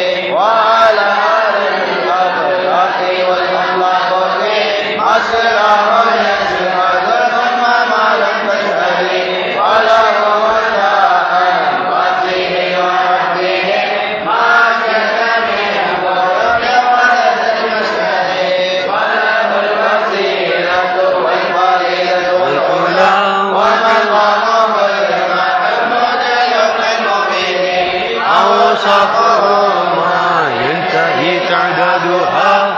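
Men's voices chanting Arabic mawlid verses in a continuous melodic recitation, the phrases rising and falling with short breaths between lines.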